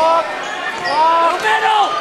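Basketball being dribbled on a hardwood gym floor under crowd noise, with a voice holding a drawn-out, wavering sound in the middle.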